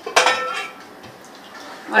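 A metal utensil strikes a metal cooking pot once, with a clear ring that fades over about half a second, followed by a few faint clicks.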